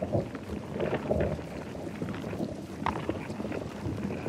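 Rumbling, crackling noise with irregular clicks and knocks and no steady tone: an experimental soundscape made from field recordings and sound samples.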